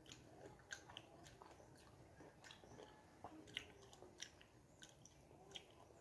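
Faint chewing of fresh pineapple: a scattering of soft, quiet mouth clicks.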